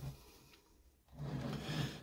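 Quiet rubbing and scraping as a small plywood model trailer is turned by hand on a bench, with a short lull in the middle.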